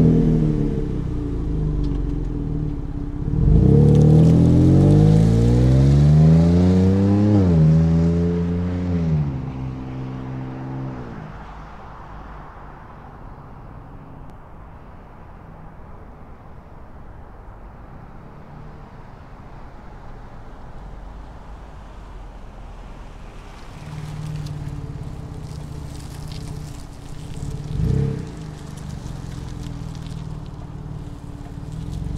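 Chevrolet Colorado pickup with an MBRP aftermarket exhaust idling, then pulling away hard: the exhaust note rises through two upshifts and fades into the distance by about eleven seconds in. After a quieter stretch the truck's engine is heard again, building from a little past twenty seconds, with a short louder burst near the end.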